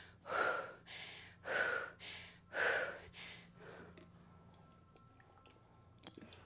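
A woman panting heavily, out of breath from burpees: about three loud breaths out roughly a second apart, with quieter breaths in between, tapering off after about three and a half seconds.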